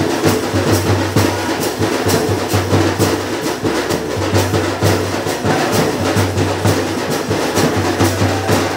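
Large barrel drum (dhol) beaten in a steady fast rhythm: sharp strokes about four a second over the drum's deep tone, which comes and goes in short phrases.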